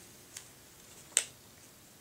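Two small clicks from hands working masking tape and a pair of scissors: a faint one, then a sharper, louder one about a second in.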